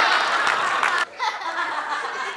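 Theatre audience laughing, with some clapping. The sound cuts off abruptly about a second in, leaving quieter laughter and murmur.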